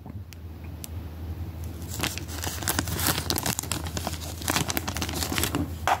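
Paper mail being handled with gloved hands: an envelope and papers rustling and crinkling. It is quieter at first, then grows into busy, irregular crinkling from about two seconds in.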